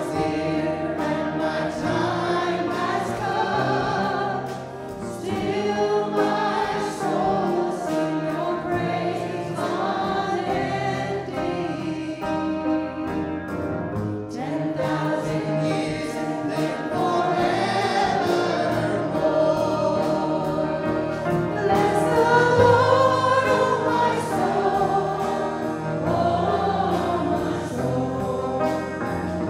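A church worship band and a group of singers performing a worship song: several voices singing together over electric bass, acoustic guitar and piano.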